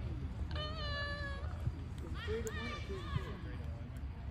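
Distant voices shouting across a soccer field: one long, held high call about half a second in, then a few shorter shouts about two seconds in.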